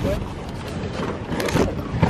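Steady car noise heard inside the cabin, with a brief rustle about one and a half seconds in.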